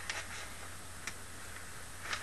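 Faint ticking, about one tick a second, over a low steady hum.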